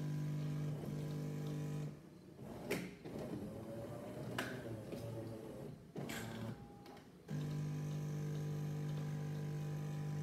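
Jura Z6 fully automatic coffee machine running its cleaning program: a steady pump hum that cuts off about two seconds in. A few clicks and quieter running sounds follow, then the hum starts again abruptly about seven seconds in.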